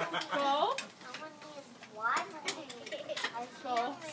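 A dog's paws and claws knocking and clicking on the rungs of a stepladder as it climbs, a handful of separate sharp knocks. People's voices come at the start and near the end.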